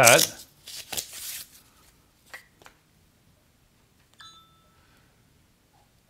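Clicks and rustles as an Apple Watch charging puck is handled on an iPad and the watch is set onto it, then a short chime about four seconds in as the Apple Watch starts charging.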